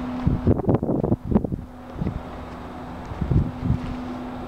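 Wind buffeting a handheld microphone outdoors in irregular gusts, over a steady low hum.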